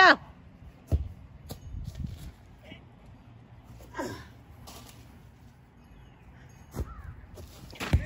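Soccer ball kicked on grass in a backyard: a few dull thumps, the clearest about a second in and another near the end. Brief, faint falling calls come around the middle and near the end.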